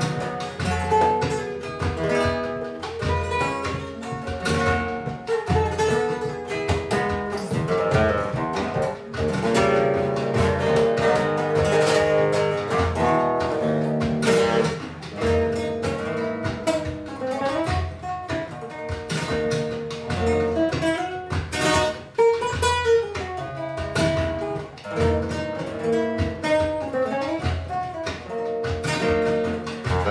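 Solo nylon-string Spanish guitar playing fandangos de Huelva: plucked melody lines broken by frequent sharp strummed chords.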